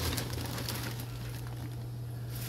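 A steady low hum runs throughout, with faint crinkling of a plastic salad bag as it is handled.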